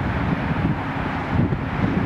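Wind buffeting the microphone: a steady low rumbling noise.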